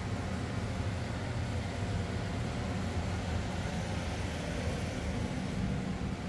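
Steady low mechanical hum of a house's air-conditioning system running, even throughout.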